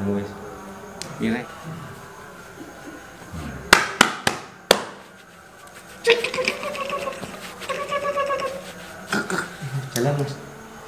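Four sharp smacks in quick succession about four seconds in, hands striking the patient's body during a massage-healing treatment, followed from about six seconds by long, drawn-out vocal sounds held on a steady pitch.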